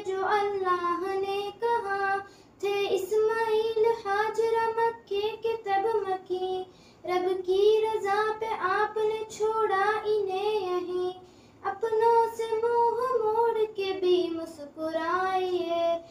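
Young girls singing an Urdu devotional kalaam without instruments, in phrases separated by short breaks.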